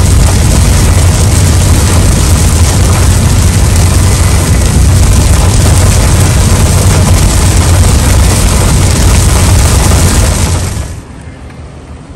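Heavy rain pelting a moving car, together with tyre noise on the flooded highway, heard from inside the cabin: a loud, steady wash with a deep rumble. It cuts off abruptly about ten and a half seconds in.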